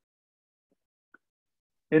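Near silence: a pause between a man's spoken sentences, with one faint tick about a second in. His voice starts again at the very end.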